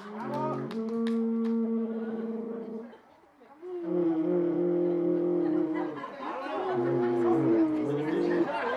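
Alphorn blown in long held notes: a first note of about three seconds, a short break, then further sustained notes that shift in pitch near the end.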